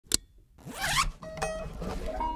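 Bowl-back mandolin: a single click, then a rasping scrape across the strings about half a second in, followed by a few short plucked notes.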